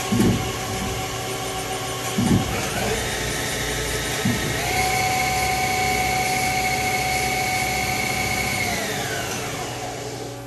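Haas SL-30 CNC lathe running with its spindle drive whining, stepping up in speed twice after short clunks, holding a high steady whine, then winding down near the end.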